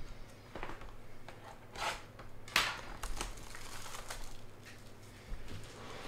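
Trading-card pack wrapper crinkling and tearing as a pack is opened by hand: a series of short rustles, the loudest about two and a half seconds in.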